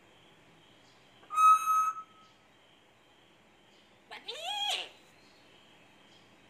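African grey parrot vocalising: a loud, steady-pitched whistle about a second and a half in, then a shorter call that rises and falls in pitch about four seconds in.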